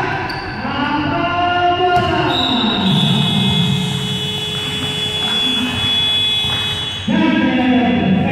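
Voices calling out in an echoing sports hall during a basketball game. About two seconds in, a steady high-pitched buzzer tone starts and holds for roughly four and a half seconds before cutting off.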